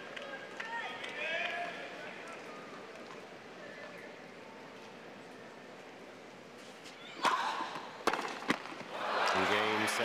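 Quiet stadium crowd murmur, then a short tennis rally: a few sharp racket strikes on the ball about seven to eight and a half seconds in. The crowd then breaks into loud cheering and applause as the winning point ends the match.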